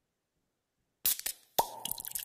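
Silence, then about a second in a recorded show intro starts with a sudden burst of sound. A second burst follows half a second later with a held tone, leading into the intro's music and effects.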